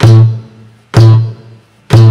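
Acoustic guitar's open A string plucked together with a palm hit on the strings, giving a kick-drum-like thump, three times about a second apart. Each stroke rings briefly at the low A and fades.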